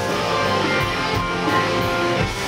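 Live rock band playing loud: electric guitars over bass and a drum kit with a steady beat.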